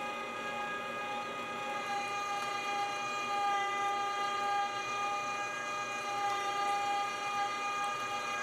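Electric No. 12 meat grinder running steadily with an even motor whine as partially frozen pork and fat are fed through a fine 4.5 mm plate.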